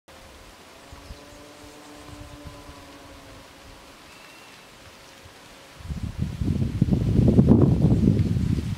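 Quiet outdoor background with a faint low hum for the first few seconds. About six seconds in, a loud gust of wind starts buffeting the microphone and keeps rumbling.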